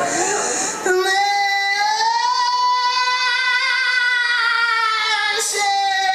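A woman's voice singing one long held note, rising slightly in pitch. It begins about a second in, breaks briefly near the end, and a second long note follows.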